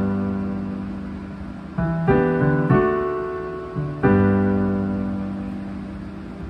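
Piano playing a slow song introduction, each chord struck and left ringing until it fades. A new chord comes about two seconds in, followed by a few quicker notes, and another chord around four seconds in.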